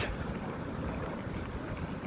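Steady wind rumble buffeting the phone's microphone outdoors by open water, with one short sharp click right at the start.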